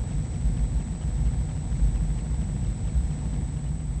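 Steady low background rumble, even throughout, with nothing sudden standing out above it.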